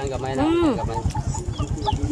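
Chickens clucking: a longer call rising and falling about half a second in, then a run of short clucks.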